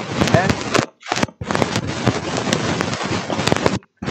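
Loud noise full of rapid clicks coming through a participant's unmuted microphone in an online meeting, band-limited like call audio, breaking off twice about a second in and stopping shortly before the end.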